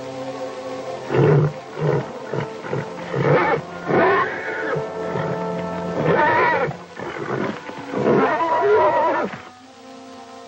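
A horse neighing and squealing in a series of loud calls, several a second or two apart, over background music.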